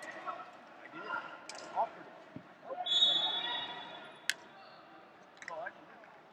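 Scattered voices echoing in a large sports hall, with a referee's whistle blown once for about a second and a half near the middle, the loudest sound, followed by a single sharp clap.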